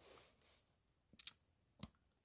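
Three or four faint, brief clicks and taps of a ballpoint pen and hand moving over a paper form on a table.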